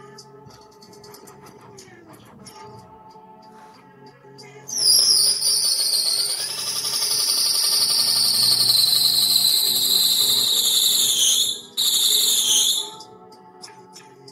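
Electric minibike's motor and chain drive spinning the rear wheel with a loud, high-pitched whine that drifts slowly lower in pitch, cutting out briefly and then stopping near the end, over background music.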